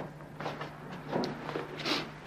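Clothes being handled: a few short rustles as a jacket on a wooden hanger is hung up and a shirt is lifted out of a bag.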